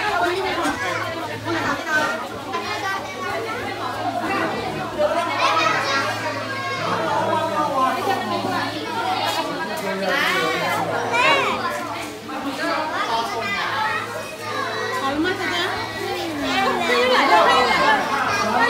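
Many children and adults talking and calling out over one another, with high-pitched children's voices throughout.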